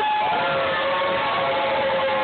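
A group of people calling out a long, drawn-out "hello" together, several voices holding one steady note.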